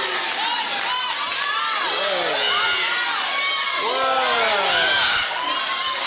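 Spectators shouting and cheering on karate fighters during a bout: many voices, children's among them, calling out over one another, a little louder in the middle.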